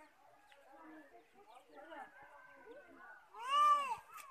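One loud, arched, meow-like call from a black, yellow-billed bird, probably a myna, a little after three seconds in. It rises then falls in pitch and lasts about half a second, over faint distant voices.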